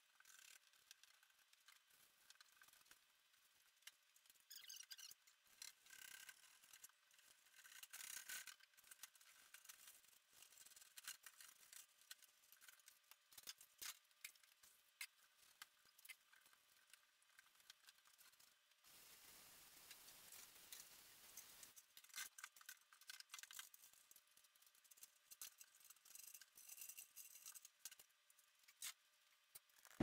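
Near silence, with faint scrubbing of a Scotch-Brite pad over the ice bin's walls during acid descaling, and a few light knocks.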